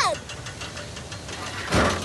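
Pickup truck engine running low and steady as the truck drives slowly over grass, with a short, loud rush of noise near the end.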